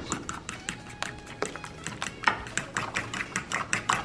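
Metal fork beating a thick batter of tapioca starch, egg and cream cheese in a ceramic bowl: rapid, steady clicking of the fork against the bowl.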